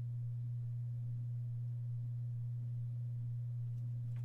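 A steady low-pitched hum, one unchanging tone with nothing else over it.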